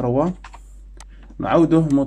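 Keys typed on a computer keyboard: a handful of separate clicks in a short pause, between stretches of a man's voice.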